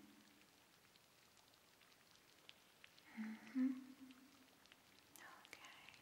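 A woman's soft voice in a near-silent room: a short, low, closed-mouth hum about three seconds in and another brief soft vocal sound around five seconds in, with a few faint ticks before them.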